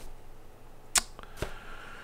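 A pause in the talk: quiet room tone with one sharp click about a second in and a fainter tick just after.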